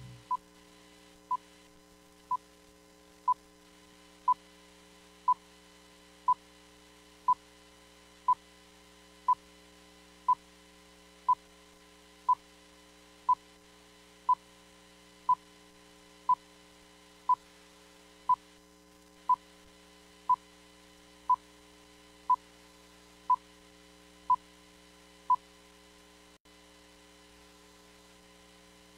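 Countdown beeps: short electronic beeps of one pitch, evenly spaced at one a second, ticking off the seconds before a broadcast begins, over a faint steady electrical hum. The beeps stop a few seconds before the end.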